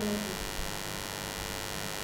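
Steady electrical mains hum with a faint hiss, the background of the recording, as the last of a spoken word fades out at the start.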